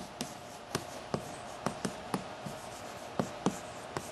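Chalk writing on a blackboard: a string of light, irregular taps and clicks as each stroke of an equation is made.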